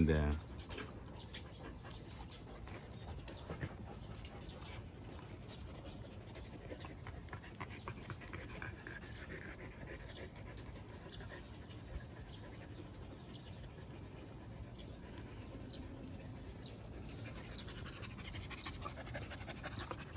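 Jindo dogs panting and sniffing close to the microphone, quiet and steady, with faint soft ticks and rustles throughout.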